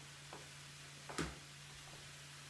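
Quiet kitchen room tone with a steady low hum, broken by one soft knock about a second in and a faint tick just before it.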